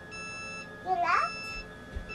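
RV automatic leveling jacks retracting: a steady high whine with a repeating high-pitched warning beep that sounds on and off as the jacks pull up to the frame. A child's short rising vocal sound about a second in.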